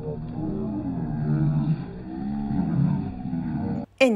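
Deep, drawn-out voices of men shouting and whooping in the sea, slowed right down so that they sound low and long. They cut off suddenly just before the end.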